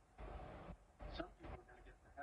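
Faint speech from a preacher's sermon playing in the background, in short phrases with pauses between them.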